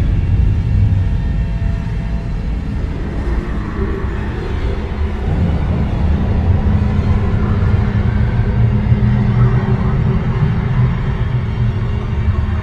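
Suspenseful horror film score: a low, rumbling drone with long held tones.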